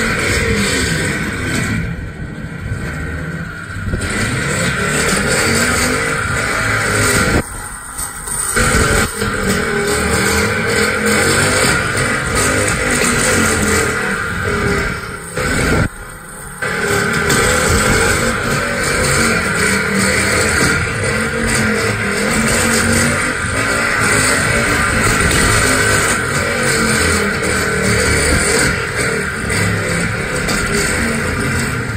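Motor of a rotating-arm dog lure machine running, its pitch rising and falling repeatedly as its speed changes, dipping briefly twice, about a third and half of the way in.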